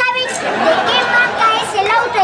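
Only speech: people's voices talking over one another, with no words the recogniser could make out.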